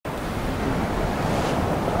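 Ocean surf washing up a sandy beach at high tide, a steady rush of breaking foam, with wind rumbling on the microphone.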